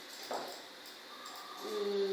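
Quiet room tone, then near the end a faint, steady, held 'uhh' from a woman's voice, a hesitation before speech resumes.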